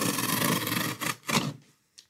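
Utility knife blade drawn through corrugated cardboard along a straightedge: a rapid, crackly scrape until about a second in, then two short strokes.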